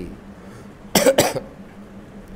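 A man coughs twice in quick succession, about a second in.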